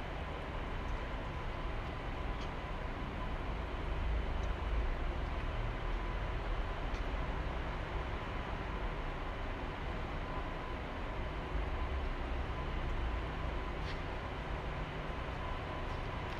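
Steady background noise of a large indoor hall: a low, uneven rumble with hiss and a faint steady whine, broken only by a few faint ticks.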